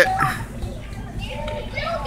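Young children's voices chattering.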